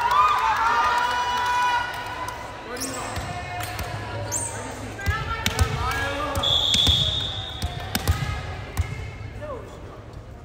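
Volleyball players' voices calling out in an echoing gymnasium for the first couple of seconds, then one short referee's whistle blast about six and a half seconds in, signalling the serve. Around it come a few sharp knocks of a volleyball being bounced on the hardwood floor.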